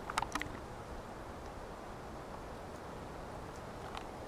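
Faint, steady hiss of outdoor background noise, with a few short clicks in the first half second.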